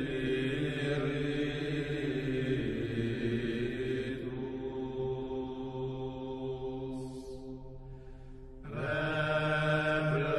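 Slow, chant-like background music of long held notes. The chord changes about four seconds in, the sound thins and drops near eight seconds, and a new held chord swells in about nine seconds in.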